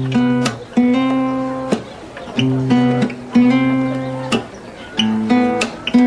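Acoustic guitar strumming about six slow chords, each left to ring and fade before the next, as the chords of a song are shown one at a time.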